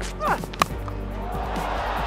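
A single sharp crack of a cricket bat hitting the ball a little over half a second in, the loudest sound, over background music.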